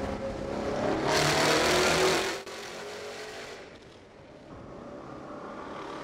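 Veritas RS III's BMW V8 accelerating, its note rising in pitch and swelling to its loudest with a rushing noise about a second in. It then drops abruptly to a quieter, steady drone.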